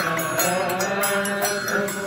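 Male voices chanting a Coptic hymn in unison, with hand cymbals and a triangle struck in a steady beat that rings high above the singing.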